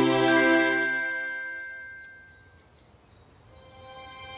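The closing chord of a studio logo jingle fades out while a single bright chime rings about a third of a second in and dies away over a couple of seconds. After a brief near-silence, soft music begins near the end.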